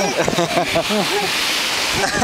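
Brief indistinct talking for about the first second, then a steady rushing hiss for the rest.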